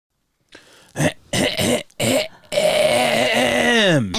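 Sad-trombone "wah-wah-wah-waaah" sound effect: three short notes, then one long wavering note that slides down at the end.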